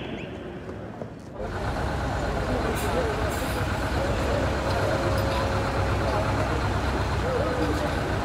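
Inside a coach bus: the low, steady rumble of its engine running, under an indistinct murmur of many young voices. It sets in about a second and a half in, after a quieter stretch.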